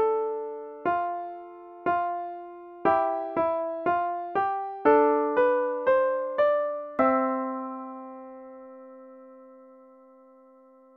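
Piano playing a two-voice counterpoint exercise, a melody above a cantus firmus, two notes struck together on each beat. The notes come about once a second, then quicken to about two a second in a quarter-note cadence that ends on a third above the tonic. The final chord, struck about seven seconds in, rings and fades.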